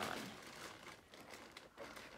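Faint rustling and handling noise, with a light click or two near the end, as small wooden and plastic toy car parts are fitted together by hand.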